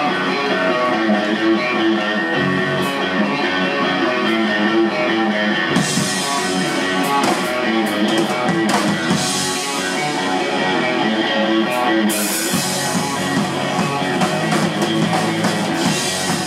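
Live rock band playing an instrumental passage on electric guitar, bass guitar and drum kit. About six seconds in, a bright hiss of cymbals joins the drumming; it drops out briefly and comes back near twelve seconds.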